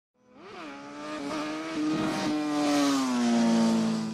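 Logo intro sound effect: a sustained pitched tone with a hiss over it, swelling from silence to loud and sliding gently down in pitch in the second half.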